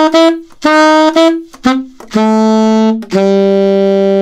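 Alto saxophone playing a classic rock-and-roll horn line slowly: the last of the repeated short C to C-sharp note pairs, then a step down through A and F-sharp to a long held E.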